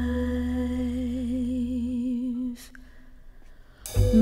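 A singer holds a long note with vibrato over soft bass accompaniment. The note fades out about two and a half seconds in, leaving a short quiet gap before the voice and band come back in at the very end.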